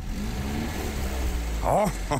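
Car engine idling with a low, steady rumble, and a brief voice over it near the end.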